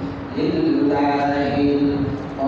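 A man's voice chanting in long, drawn-out melodic phrases through a microphone, each note held for about a second. The chanting resumes after a brief breath at the start.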